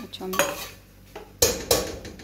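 Stainless-steel kitchenware clattering: a serving spoon knocking and scraping against a steel pot and plate as rice is dished out, with a clank about half a second in and two louder clanks close together near the end.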